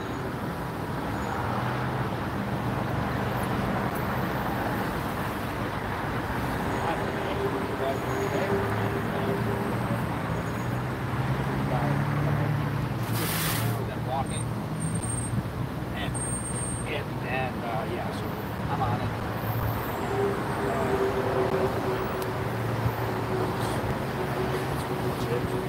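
Dense multi-lane freeway traffic: a steady rush of tyres and engines from many passing cars.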